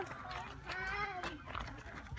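A goat bleating once, faintly: a single wavering call of under a second that rises and then falls.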